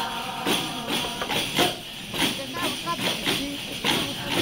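A group of panderetas (hand-held frame drums with metal jingles) beaten together in the steady rhythm of a baile llano, a traditional Leonese dance, with a jingling hit on each stroke, two or three a second. Voices sing over the drums.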